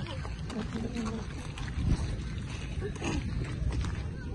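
Steady low rumble with faint, high-pitched voices of children in the background.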